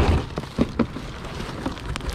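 A thump right at the start, then a series of short knocks and clicks as items are shifted and pulled around inside a cardboard box.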